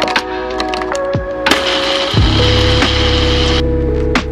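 Personal blender crushing ice for about two seconds, cutting off suddenly, over background music.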